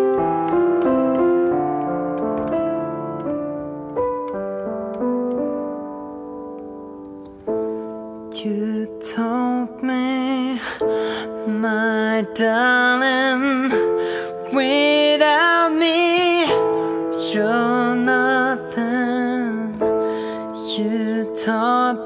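Solo piano sound played on a keyboard, slow chords and melody. A man starts singing over it about eight seconds in, with a wavering vibrato on held notes.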